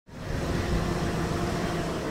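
Military Humvee driving past: a steady engine rumble with road noise.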